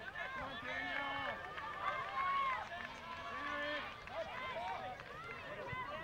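Several voices shouting and calling out at once, overlapping and indistinct, with no clear words.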